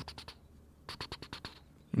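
A quiet pause in the talk, broken by a few faint clicks in two short clusters, one near the start and one about a second in.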